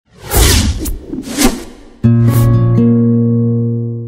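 TV channel logo ident sting: about two seconds of whooshing sweeps, then a sudden sustained musical chord that rings and slowly fades.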